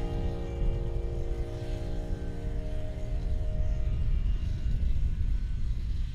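Snowmobile engines running as the machines ride across snow, a steady low rumble. Held music notes lie over it and fade out about four seconds in.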